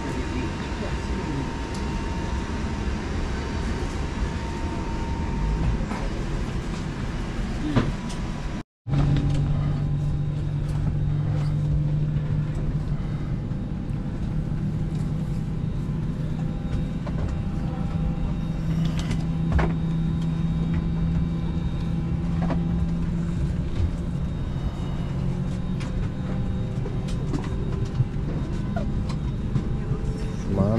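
Steady air-handling noise in an airliner boarding bridge with a faint steady whistle. After a brief dropout about nine seconds in, there is the steady low hum of a parked airliner's cabin ventilation and onboard systems, with faint background voices and occasional clicks and knocks.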